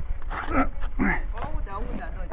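Three short wordless whimpering cries in quick succession, each bending up and down in pitch, over a low rumble of wind on the microphone.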